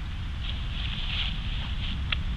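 Low, steady wind rumble on the camcorder microphone, with soft rustling of footsteps in dry fallen leaves.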